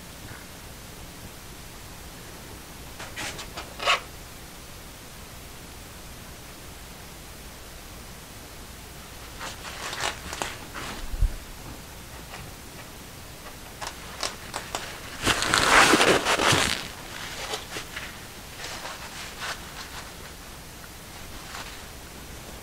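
Handling noises on a work table: scattered soft clicks and rustles over a low steady hiss, with one louder rustling that lasts about two seconds past the middle.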